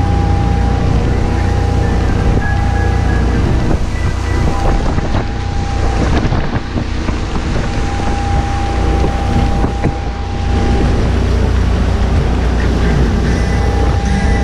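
Rinker Fiesta Vee cruiser running underway at speed: a steady low engine drone with water rushing past the hull and wind on the microphone, which buffets for a few seconds around the middle.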